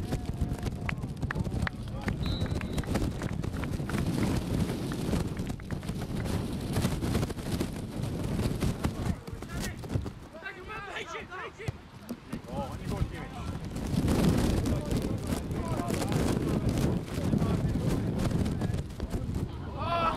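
Outdoor youth football match sound: a steady low rumble on the microphone with scattered thuds, and players' shouts around the middle and again at the end.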